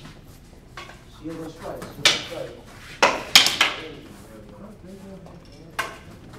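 Sharp clacks of wooden fighting sticks landing hits in stick-fighting sparring: one about two seconds in, a quick run of three a second later, and a last one near the end.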